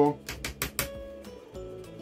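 A quick run of about six light clicks and taps from a soldering iron tip working on a laptop motherboard, lifting off a tiny surface-mount fuse that is being desoldered as faulty.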